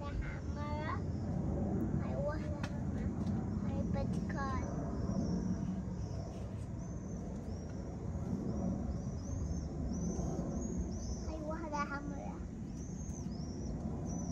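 Outdoor background: a steady low rumble with brief high-pitched voices calling a few times, and a run of short, high, repeated chirps through the second half.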